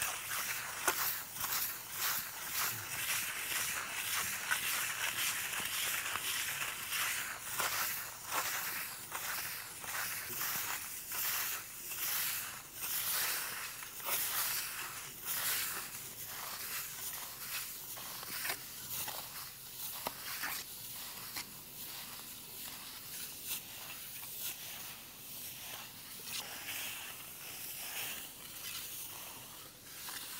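Steel float scraping across a fresh cement plaster finishing coat in a steady run of short strokes, smoothing the surface. The strokes grow somewhat softer in the second half.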